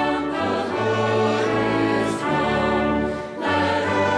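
Recessional hymn played by a brass ensemble of trumpets, trombone and tuba, with a choir singing and an organ. The music moves in sustained chords that change about every second, with a short dip just before a new phrase near the end.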